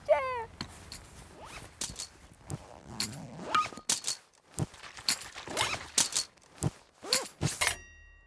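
Irregular footsteps and knocks, opening with a short falling vocal exclamation. A chime starts ringing at the very end.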